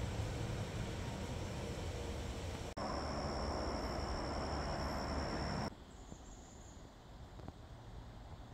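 Outdoor background noise, with a steady high-pitched insect buzz for about three seconds in the middle that cuts off abruptly, followed by quieter woodland ambience.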